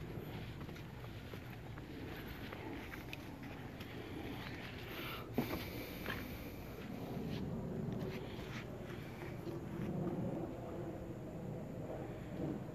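Quiet outdoor background noise with scattered soft knocks and one sharp click about five seconds in.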